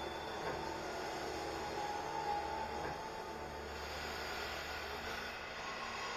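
Steady rumble and hiss of the Hogwarts Express ride's train carriage in motion, heard from inside the compartment, with a faint thin tone in the middle.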